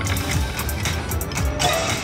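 Electronic music and sound effects from a Wicked Wheel Panda video slot machine, with a steady pulsing beat. Near the end a brighter, busier burst of machine sound comes in as a new spin of the reels starts.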